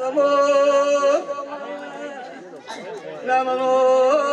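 A man's voice singing long, steady held notes, with a dip about a second in to quieter, broken voices, then another held note near the end.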